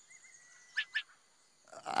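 Quiet cartoon jungle ambience with two quick bird chirps about a second in, over a faint steady high tone. A man's voice begins near the end.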